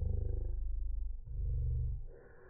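A loud, low mechanical rumble with a fast, even pulse. It cuts out briefly a little past a second in, then resumes.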